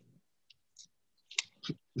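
A quiet pause broken by a few faint, short clicks, then a laugh beginning right at the end.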